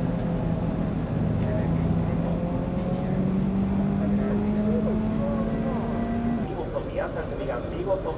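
A vehicle engine droning steadily and rising slowly in pitch, then cutting off about six and a half seconds in, with voices underneath it.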